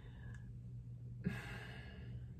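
A woman's soft sigh: one breath of air, without voice, starting a little past the middle and lasting under a second, over a low steady room hum.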